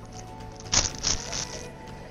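Crinkly plastic balloon packet rustling for under a second, about halfway in, over steady background music.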